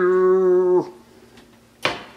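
A woman's voice holding one long, flat-pitched drawn-out vowel, a stretched "I...", that stops just under a second in. Near the end comes a single sharp click.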